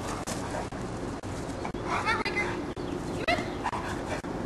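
Boerboel giving short, high-pitched yelps while playing, about two seconds in and again a little after three seconds.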